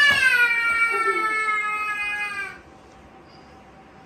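A toddler's single long, high-pitched squeal, lasting about two and a half seconds and sliding slightly down in pitch before cutting off. A sharp knock, a cricket bat striking the ball, comes right at its start.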